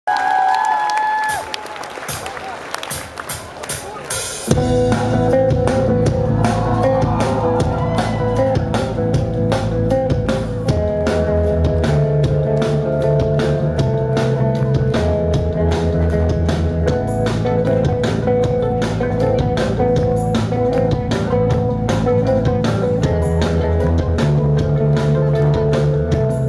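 Live rock band opening a song. For the first few seconds there are crowd noise and evenly spaced taps. About four and a half seconds in, drums, bass and guitar come in together at full level and play on with a steady beat, with no singing yet.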